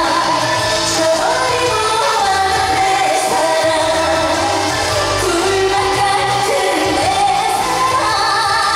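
A woman singing a Korean trot song live into a handheld microphone over an amplified backing track, holding long notes.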